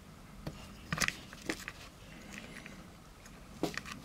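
A few light clicks and taps from a metal lens adapter being handled in the fingers, spaced irregularly, the sharpest about a second in.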